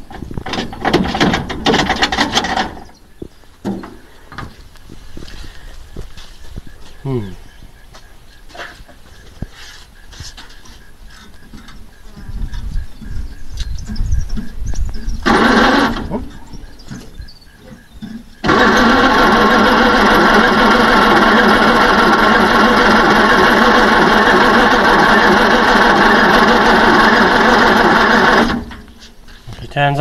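1948 Bedford six-cylinder engine turned over on the starter motor after 15 to 20 years of sitting: a short burst of cranking near the start, then a long steady crank of about ten seconds that stops suddenly. The engine does not fire; the owners go on to check the points for spark.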